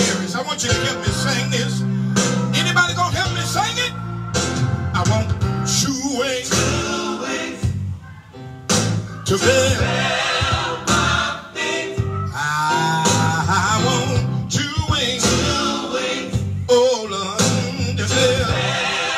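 Live gospel music: a band with bass and guitar plays while a male voice sings over it, with vocal runs. The music dips briefly about halfway through.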